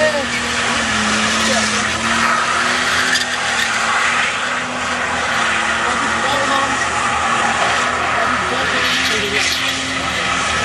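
Nissan Skyline R31 doing a standstill burnout: the engine is held at steady high revs while the rear tyres spin and squeal on the road.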